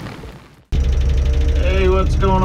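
A noisy intro sound effect fades out. After a brief moment of silence, a Tadano all-terrain crane's diesel engine cuts in, idling with a steady low rumble.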